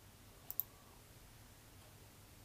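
A computer mouse button clicked, two sharp ticks in quick succession about half a second in, over faint room tone.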